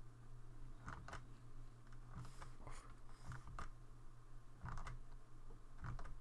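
Faint, irregular clicks of a computer mouse and keyboard while operating 3D software, over a low steady hum.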